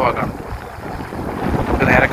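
Wind buffeting the microphone over the low wash of the sea against a rock breakwater; the rumble lasts about a second and a half between two bits of a man's voice.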